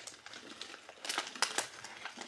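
Crunchy roasted edamame nuggets being chewed: a scatter of short, crisp crunches, thickest about halfway through.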